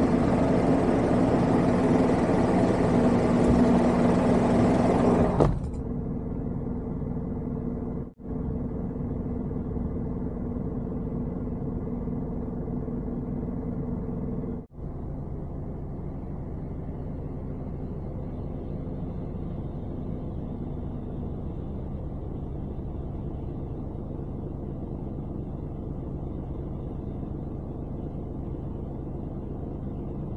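Heavy diesel engine running steadily, a low rumble that is loud for the first five seconds and then quieter, broken by brief drop-outs about 8 and 15 seconds in.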